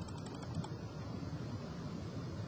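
A few light clicks of computer keys tapped repeatedly to scroll down a menu, over a faint steady low hum.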